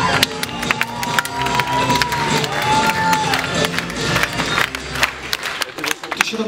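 Upbeat pop backing track with a few long held sung notes, under audience cheering and scattered applause. The music stops shortly before the end.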